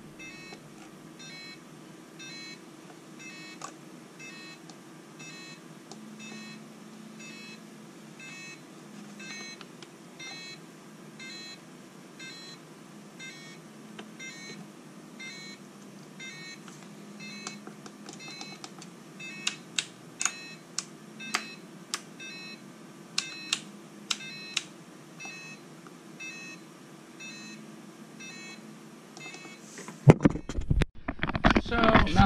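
Short electronic beep repeating about twice a second from the freshly powered RC rock crawler's electronics, typical of a speed controller that gets no signal because the receiver is not yet bound to the transmitter. A handful of sharp clicks stand out, loudest, about two-thirds of the way through.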